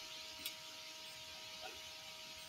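Quiet pause: a faint steady hiss with a thin electrical hum, broken by one light click about half a second in.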